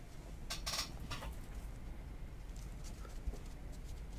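Trading cards being handled in the hand: a couple of short swishes about half a second to a second in as cards slide off the stack, then faint ticks of cards being shifted.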